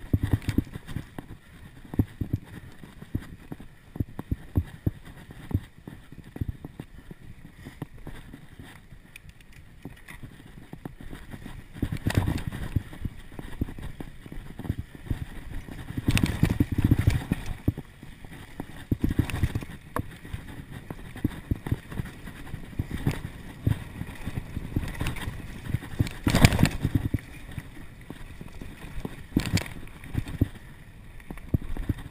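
Mountain bike riding fast over a rough dirt singletrack, heard from a camera on the rider: a continuous rattle and clatter of the bike and tyres over bumps, with irregular sharp knocks and several louder clusters of jolts.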